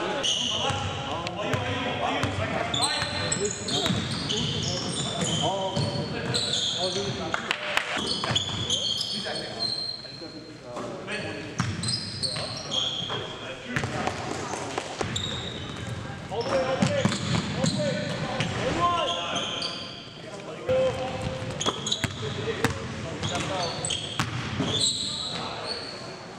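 Live basketball game sound: the ball bouncing on a hardwood court, sneakers squeaking and players calling out to each other.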